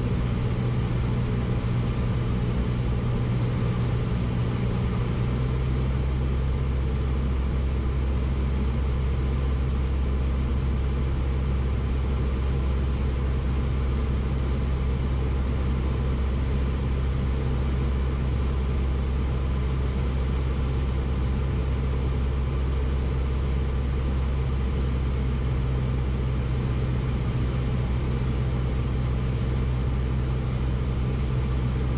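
Cessna's single piston engine and propeller droning steadily, heard from inside the cockpit on final approach; the engine note changes about five seconds in and again near the end.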